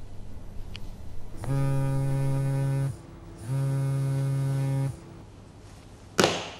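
A phone ringing: two long, steady, buzzy rings, each about a second and a half, a little over half a second apart, over a faint low hum.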